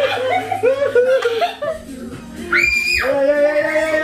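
People talking and laughing in a lively group, with a short high-pitched squeal about two and a half seconds in, followed by a steady held note.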